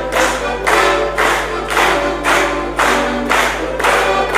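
A diatonic button accordion playing a folk tune, with chords accented in a steady beat about twice a second.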